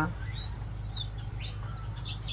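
Small aviary finches giving a few short, high chirps, one falling in pitch and one quick rising note, over a steady low background hum.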